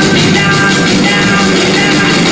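Live rock band playing loud through a theatre PA: electric guitar, bass and drums under a woman singing lead.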